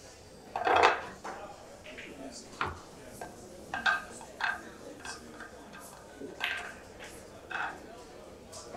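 A few faint, scattered clinks and knocks in a quiet room, about six in all, the loudest about a second in.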